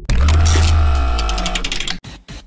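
Intro logo sting: a sudden deep bass hit under a held musical chord, fading over about two seconds, with a run of rapid high ticks in its second half.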